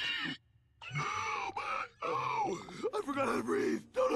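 A person's voice: a spoken phrase trails off, then after a brief pause come drawn-out wordless vocal sounds from about a second in, broken once near the middle.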